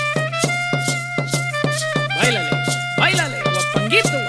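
Mexican banda music: brass and clarinets hold sustained notes over a steady quick beat and a low bass line. A voice speaks over the music from about halfway through.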